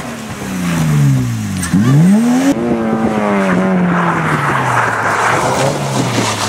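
Hill-climb race car engines at high revs. The pitch drops as the car brakes and shifts down, then climbs again under acceleration. About two and a half seconds in, a cut brings in another car running at steadier revs.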